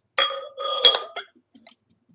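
Glassware clinking: a sharp knock followed by a short ring, then a louder second clink with ringing, and a small third tap just after the first second.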